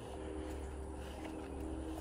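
A steady low hum with faint steady tones above it, from a distant motor.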